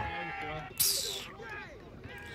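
Faint shouting voices of footballers on the pitch, wavering, with a short hiss about a second in.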